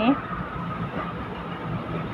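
Steady low hum of an idling vehicle engine under general street noise.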